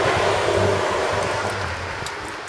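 Volcanic hot-spring steam hissing out of a metal outlet used for boiling eggs: a steady rushing hiss that slowly fades, with a low hum underneath.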